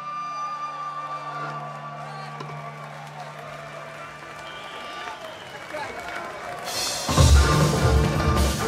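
Live band of traditional Korean instruments: a held note rings on and fades over several seconds over crowd noise, then the full band with drums comes back in loudly about seven seconds in.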